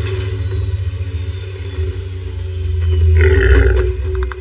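Film soundtrack music with a deep, low rumbling drone that starts suddenly and swells louder, topped by a short, harsh, brighter burst about three seconds in.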